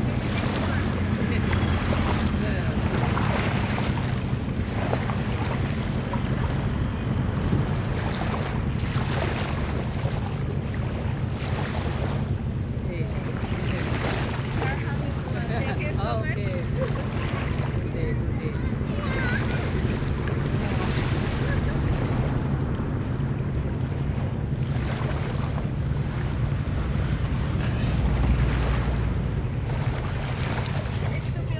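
Wind buffeting the microphone over small sea waves washing in, with a steady low drone underneath throughout.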